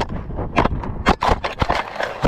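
A camera-carrying child mannequin struck by a car and tumbling into dry grass: a rapid, irregular run of knocks, thuds and scrapes.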